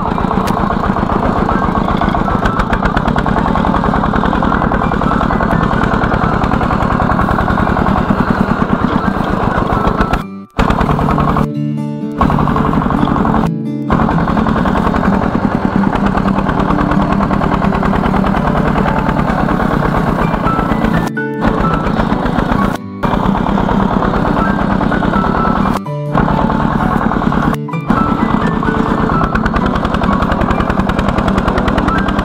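Single-cylinder diesel engine of a two-wheel công nông tractor running steadily while pulling a trailer loaded with wood, a fast, even chugging of exhaust beats. The sound breaks off briefly several times.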